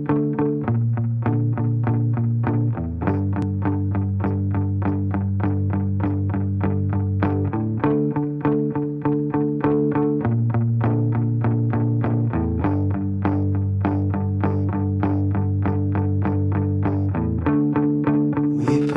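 Instrumental song intro: guitar notes picked steadily, about four a second, over a bass line that moves to a new note every few seconds.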